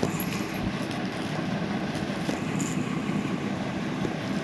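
Steady low rumbling noise.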